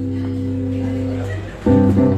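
Accordion holding a steady chord with the guitar, fading out about a second and a half in, then a new chord starting near the end, played during a sound check.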